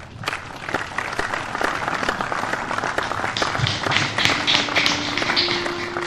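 A dense patter of many small clicks and crackles starts suddenly and grows brighter and sharper in its upper range toward the end. Low sustained violin notes come in under it near the end.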